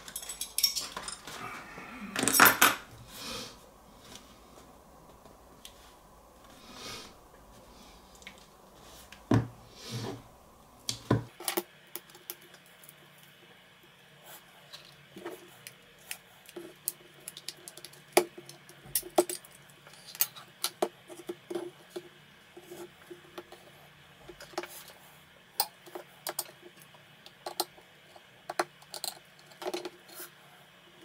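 Metal-cased portable Bluetooth speaker being handled and pried apart by hand with a metal pry tool: scattered clicks, taps and metallic clatter from the casing, its end cap and the tools, the loudest knock a couple of seconds in.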